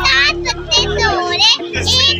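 A young child's high voice talking over loud background music with a strong bass and a held steady tone.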